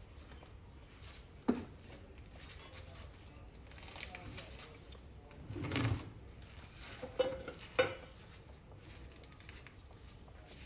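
Scattered knocks and a scrape from hand tiling work with a trowel and buckets of tile adhesive: one sharp knock about a second and a half in, a longer, louder scrape-and-thud around six seconds, and two quick sharp knocks a little after seven seconds.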